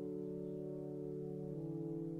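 Brass band score played back through notation software with sampled brass sounds: sustained chords over held low brass notes, the harmony shifting about one and a half seconds in.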